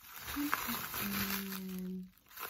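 Plastic bubble wrap crinkling as it is unwrapped and handled, followed about a second in by a woman's voice holding one steady hummed note.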